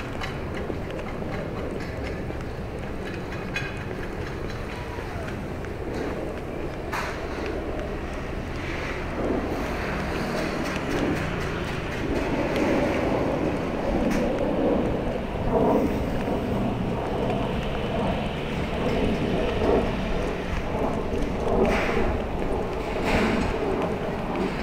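Outdoor riverside ambience: wind buffeting the microphone over a steady rumble of road traffic, the gusts growing stronger and more uneven about halfway through.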